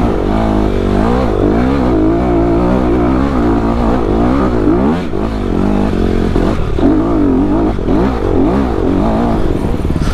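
Dirt bike engine, heard from the rider's helmet camera, revving up and down again and again as the throttle is worked over a rough trail.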